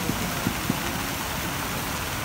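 Fountain jets splashing steadily into a stone basin, a continuous rushing hiss of falling water, with faint voices of passers-by underneath.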